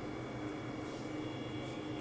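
Steady background hum with a few faint, unchanging tones, like a fan or ventilation running, with no distinct handling knocks.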